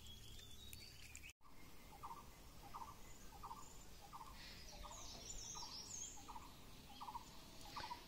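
Faint outdoor ambience with a bird repeating a short note over and over, about one and a half notes a second, and a few higher chirps from another bird around the middle. The sound cuts out completely for a moment a little over a second in.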